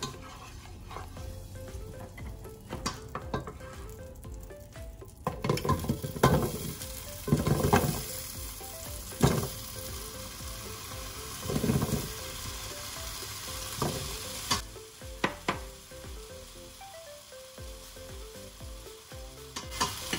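Cubed potatoes going into hot oil in a pot over medium-high heat: the oil starts sizzling about five seconds in, with loud knocks as the pieces drop in and are stirred, and the sizzle eases off near the end. The potatoes are being sautéed to brown them.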